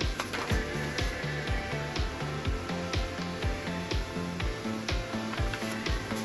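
Background music with a steady beat of about two low drum hits a second over a bass line that steps up and down between notes.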